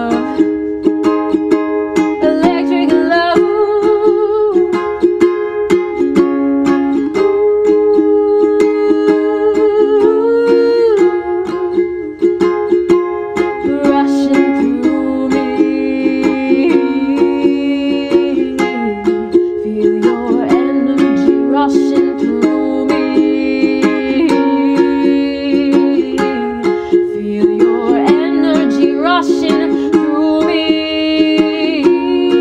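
Ukulele strummed in a steady rhythm through an instrumental passage, with a wordless vocal melody line carried over it at times.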